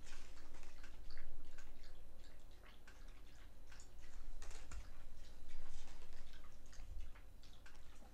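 Tarot cards being handled: picked up off a table and slid against one another, making an irregular scatter of light clicks and rustles.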